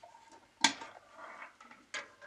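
Hands handling multimeter test probes and leads on a pedal power supply: a sharp click about half a second in, a softer rustle, then another click near the end.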